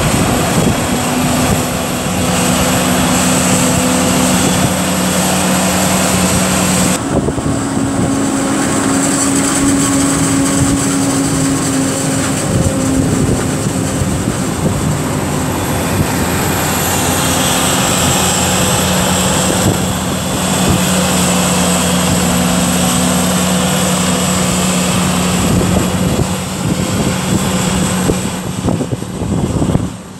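Claas Jaguar 950 forage harvester chopping maize, its engine and chopping gear making a loud steady drone with a high whine over it, mixed with the tractor pulling the trailer alongside. The engine pitch shifts a little now and then.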